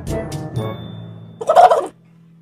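A man imitating a tokay gecko's call with his voice, a single loud, short call near the end, over a steady music bed.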